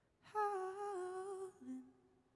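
A woman's voice humming one held note with a slight waver for about a second, followed by a brief, lower note near the end.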